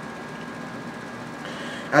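Steady room noise with a faint, even hum, and a brief soft hiss near the end.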